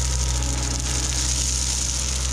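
Bobcat T66 compact track loader's diesel engine running steadily while crushed stone pours out of its tipped bucket, giving an even hiss over the engine's low hum.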